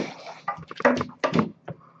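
A Great Dane making several short vocal sounds close to the microphone while playing, starting with a sudden loud bump.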